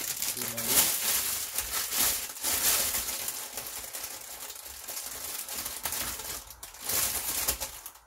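Cooking oil heating in a nonstick frying pan over a gas flame, a fluctuating crackling hiss full of tiny pops.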